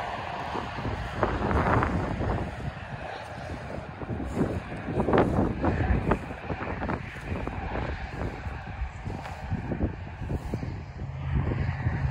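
Wind buffeting the microphone with a low rumble, with scattered irregular crunches and rustles of footsteps through dry grass.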